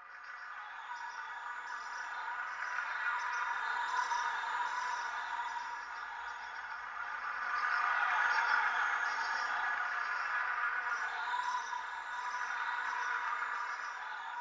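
A dark, sustained ambient music drone of several held tones, growing louder over the first few seconds and then swelling and ebbing, with a faint high pulse repeating steadily behind it.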